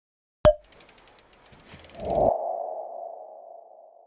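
Logo sting sound effect: a sharp click, then a run of quick ticks that speed up, then a ringing tone that swells and slowly fades away.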